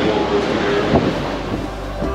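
Wind rumbling on the microphone, with faint voices of people close by and a short knock about a second in.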